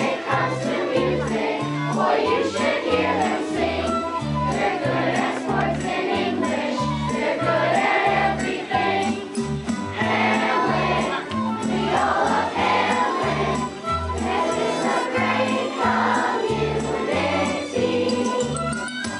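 A chorus of young voices singing a musical number together over instrumental accompaniment, with a changing bass line and a regular beat.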